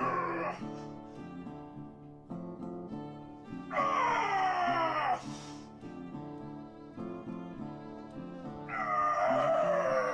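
A man's strained yells on the drive up of each rep of a heavy barbell back squat. Each is loud, lasts about a second and a half and falls in pitch: one ends just after the start, one comes about four seconds in and one near the end. Background music plays underneath throughout.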